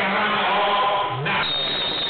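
A voice chanting in held notes that step up and down in pitch, with a brief thin, high steady tone near the end.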